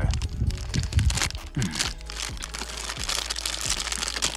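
Small clear plastic candy bag crinkling and crackling in a run of short rustles as it is handled.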